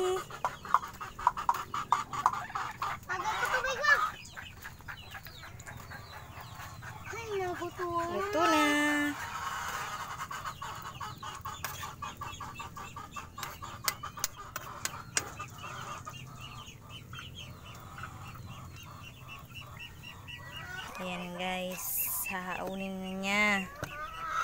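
Chickens clucking and calling, with sharp clicks in the first few seconds.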